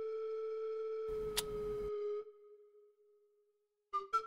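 A single held electronic tone with overtones, steady, from a synthesizer in the film's score. It fades out a little over two seconds in, leaving near silence. About a second in, a short burst of noise with a sharp click sits under the tone.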